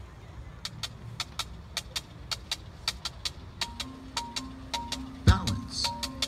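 A marching band's show opening. Sharp percussion clicks tick about three to four times a second, and about halfway through a held low note comes in with short higher notes over it. A loud drum hit lands near the end.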